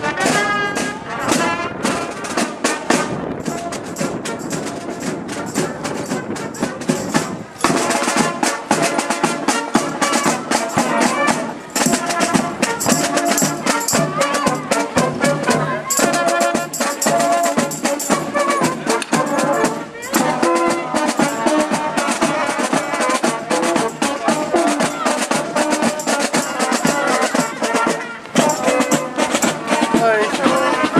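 Marching band playing while on the march: brass instruments over a steady beat of snare drums and bass drum. It grows louder about seven and a half seconds in.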